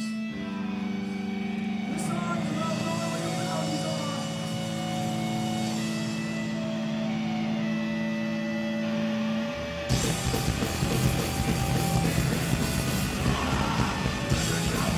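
Live hardcore punk band: electric guitars hold steady ringing notes for about ten seconds, then the full band crashes in with drums and distorted guitars, louder and denser.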